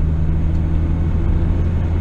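Steady low rumble of a car being driven at speed, heard from inside the cabin: engine and road noise.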